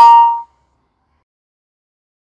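Electronic chime of several tones at once, ringing out and fading away within the first half second, as a chat message is sent. Silence follows.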